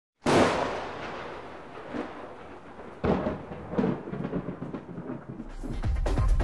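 Opening sound effect or intro music: a sudden loud boom that dies away slowly, followed by further booming hits about two, three and four seconds in.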